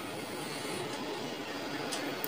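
Steady background noise with no distinct tones or events.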